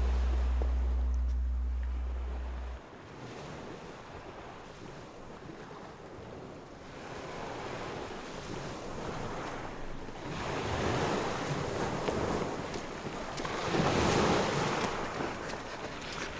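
A held low note of music rings on and cuts off about three seconds in. After it, sea waves wash on the shore with wind, swelling louder twice in the second half.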